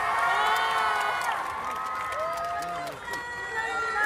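Concert crowd cheering and screaming after the music stops, many high voices overlapping.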